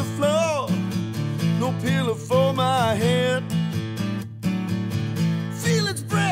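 A rock song played live on acoustic guitar: strummed chords, with a male voice holding long wavering sung notes above them and a short break a little after four seconds in.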